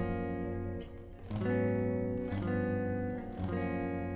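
Clean electric guitar playing neo-soul chord voicings: four chords, each struck and left to ring, in a ii–V–I progression resolving to G major. The guitar is tuned a half step down, so the progression sounds in G-flat.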